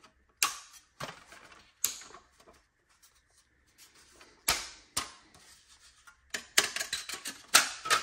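Irregular clicks and knocks of a car-stereo mounting housing being wiggled and worked free of its bezel, its locking tabs bent back. The knocks come thicker in the last second and a half as it comes loose.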